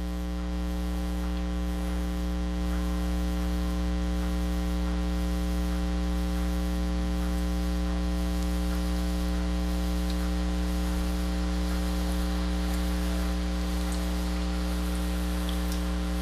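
Steady electrical mains hum with a buzzing stack of harmonics, over an even hiss of funnel-cake batter frying in a pan of hot oil.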